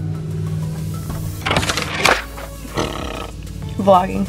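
Background music, over which a stack of paper worksheets falls onto a carpeted floor with a brief rustling slap about a second and a half in and a smaller rustle near three seconds. A short vocal groan follows near the end.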